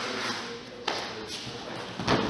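A single thump on the judo mat about a second in, as a grappler in a gi drops under his partner into a rolling throw.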